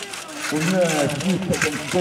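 Mostly speech: an announcer's voice begins about half a second in.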